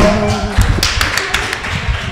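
A voice held on one note for the first half second, then a quick, irregular run of sharp taps.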